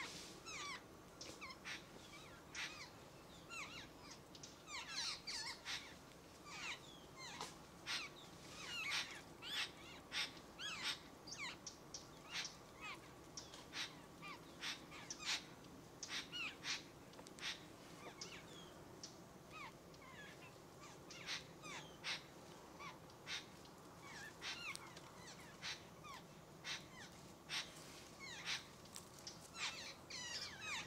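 Birds calling: a busy, continuous run of short, harsh calls, each falling in pitch, coming in clusters of several at a time.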